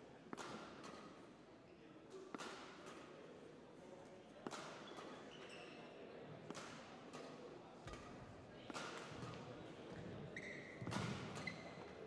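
Badminton rally: rackets striking the feathered shuttlecock with sharp cracks about every two seconds, with brief squeaks of court shoes in between.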